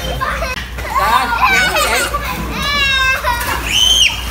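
Many children shouting and chattering at once in a swimming pool, with high-pitched voices overlapping and one high call near the end.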